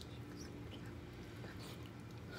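Faint close-miked eating sounds: chewing and small mouth noises from a bite of beef rib, with a few soft clicks, over a low steady hum.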